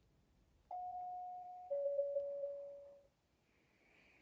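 A two-note ding-dong chime: a higher note sounds under a second in, then a lower note a second later rings on and fades.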